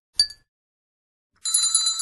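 A short click, then from about a second and a half in a notification-bell sound effect ringing with a rapid, high, tinkling flutter, for just under a second.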